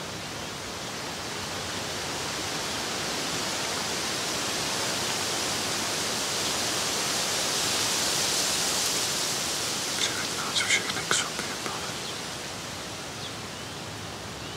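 A steady rushing noise like static or wind, swelling slowly to its loudest about eight seconds in as the picture washes to white, then easing off. A few short, faint higher sounds come around ten to eleven seconds in.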